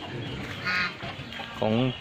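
A single short call from a bird in the poultry pen, lasting well under half a second, a little before the middle.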